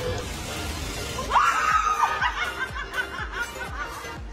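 A woman laughing: about a second in her voice rises and holds high, then breaks into a run of short laughs, over background music with a steady beat.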